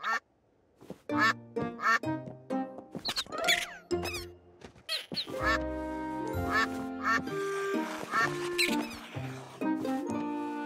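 Cartoon bird calls: a string of short, pitched squawks, some rising, starting about a second in, over playful background music that takes over with held notes and a bass line from about halfway.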